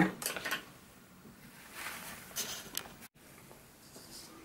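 Faint scrapes and light knocks of painting gear being handled on the table, in two short spells, with a brief dead dropout about three seconds in where the recording is cut.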